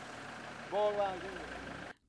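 Steady low rumble of an idling vehicle engine, with one short spoken word about a second in; the sound cuts off abruptly just before the end.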